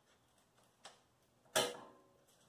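A faint click, then about a second and a half in a sharper clack with a short ring, as a small hard object is set down on a glass tabletop.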